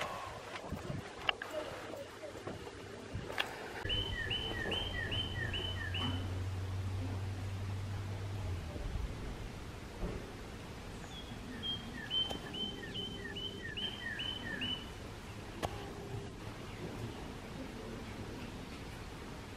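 A songbird singing two phrases of quick repeated two-part notes, about seven notes each, a few seconds in and again around the twelve-second mark, over a faint steady outdoor background. A low steady hum runs under the first phrase.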